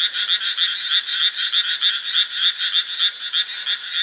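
Chorus of small rice-paddy frogs croaking: a dense run of rapid, evenly repeated croaks, several a second.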